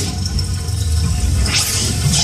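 Electroacoustic music for amplified cello and digital audio: a dense low rumble under a noisy texture, with a surge of hissing noise that swells up near the end.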